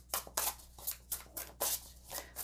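A deck of oracle cards being shuffled by hand, in quick crisp riffles of cards sliding and slapping together, about four a second.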